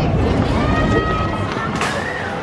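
Junior roller coaster train rumbling past on its track, the rumble easing off about a second in, with music and held tones over it and a sharp click near the end.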